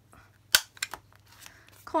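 Handheld corner punch snapping through paper card stock: one sharp click about half a second in, then a few lighter clicks.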